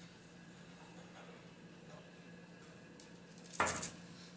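Quiet room tone, then near the end a short clatter as the glass mixing bowl and spoon are handled at the aluminium baking tray.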